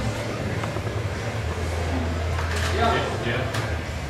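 Indistinct talking among people in a room, with no clear single speaker, over a steady low hum.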